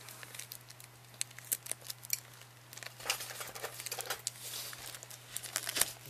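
Clear plastic shrink-wrap on a cardboard booster box being picked at and torn open by hand, crackling and crinkling in short irregular bursts.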